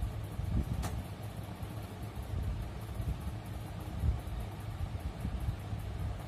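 Steady low background rumble under the faint scratching of a ballpoint pen writing on paper, with a single light click about a second in.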